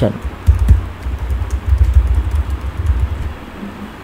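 Computer keyboard typing: a quick run of keystrokes with dull thumps, stopping about three seconds in.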